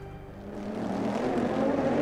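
The tail of broadcast bumper music dies away, and about half a second in the trackside sound of GT race cars fades in and grows louder, their engines running with a steady note.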